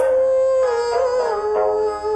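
Pingtan (Suzhou ballad) singing: one voice holds a long, slightly wavering note that steps down in pitch about a second and a half in, with plucked-string accompaniment.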